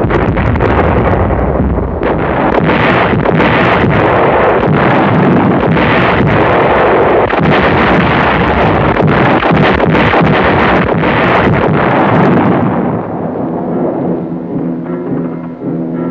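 Artillery barrage: many overlapping gun shots and blasts in a dense, continuous din. After about twelve seconds it fades and orchestral music takes over.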